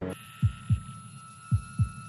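Heartbeat sound effect: two pairs of short low thumps, lub-dub, about a second apart, over a faint steady high tone.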